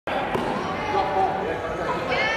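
Indistinct voices echoing in a large sports hall, with the knock of play on a hardwood court about a third of a second in.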